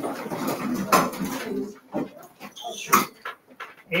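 A roomful of students standing up from their desks: chairs scraping and knocking on the floor amid general shuffling, with sharp knocks about a second in and near three seconds, and a brief squeak just before the second knock.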